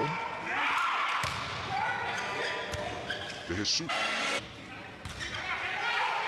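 Volleyball rally on an indoor court: the ball is struck several times, sharp slaps a second or two apart, with short squeaks of shoes on the court floor.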